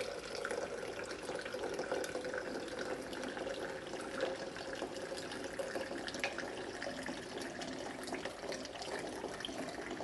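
A thin, steady stream of aqueous indigo carmine solution poured from a height into a tall glass beaker, splashing continuously into the liquid already in it.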